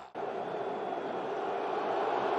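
Steady crowd noise from a football stadium crowd, an even wash of sound with no commentary over it, following a momentary dropout in the audio at the very start.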